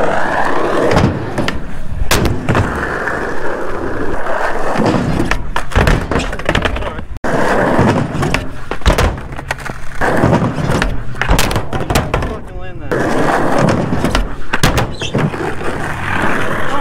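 Skateboard wheels rolling over concrete, broken by repeated sharp clacks of the board's tail popping, hitting ramp edges and landing.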